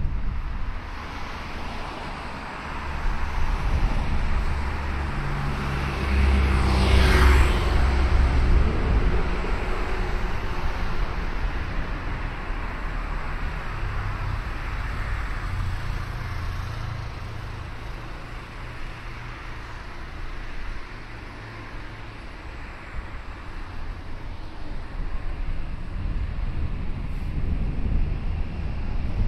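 A car passing close by on a city street, its engine and tyre noise building to a peak about seven seconds in and then fading. A steady low rumble of traffic runs underneath, with another vehicle hum rising again around the middle.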